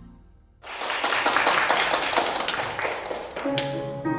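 Audience applauding, a dense patter of many hands starting about half a second in as the end of some music fades out. Piano notes begin near the end.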